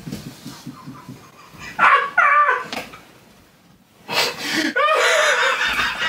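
Men's laughter without words: a low, pulsing laugh that fades over the first second, then high-pitched shrieking laughs about two seconds in and a longer, louder burst of them from about four seconds in.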